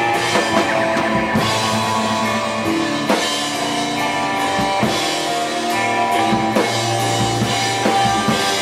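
Rock band playing: a drum kit with heavy accented hits every second and a half to two seconds, over sustained guitar and bass notes.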